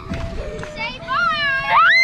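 Children's voices with background music, ending in a loud high-pitched child's yell that rises, holds and falls away.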